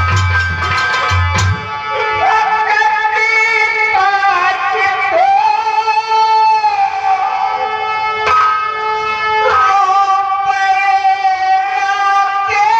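Nautanki song: a man singing long, drawn-out held notes through a stage PA, with drum beats in the first second and a half and steady instrumental accompaniment underneath.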